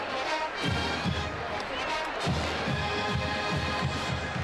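Marching band playing in the stadium stands: brass with deep sousaphone notes over a steady drum beat, with crowd noise behind.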